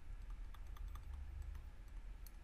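Faint, irregular small clicks and taps of a stylus pen on a tablet surface as a word is handwritten, over a low steady hum.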